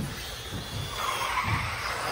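Electric 1/10-scale RC race buggies (17.5-turn brushless class) running on the track, one passing close by. Its motor and tyre noise swells from about a second in.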